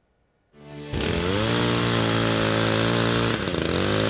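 Small gasoline engine of a pole saw revving up about half a second in and running at high speed while cutting tree branches, with a brief dip in speed near the end.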